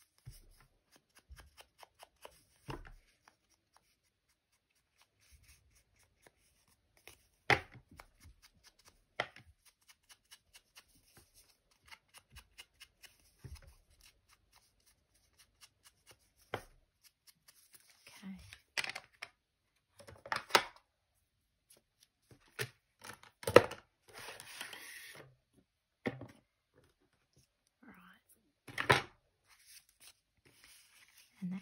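Hand crafting sounds: a small inking tool tapped and dabbed onto an ink pad and the edges of a piece of card, with card and paper being handled, heard as scattered light taps and short rustles separated by quiet gaps.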